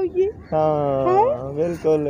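A person's voice making one long, drawn-out whining sound that slides upward around the middle, followed by a few short syllables near the end.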